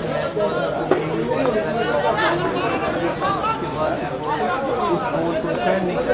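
Overlapping chatter of several voices, with a single sharp knock about a second in.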